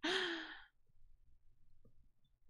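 A person's breathy sigh that trails off after about half a second.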